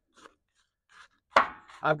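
Spatula stirring frozen shredded hash browns with egg in a ceramic bowl: a few faint scrapes, then one sharp knock against the bowl a little over a second in.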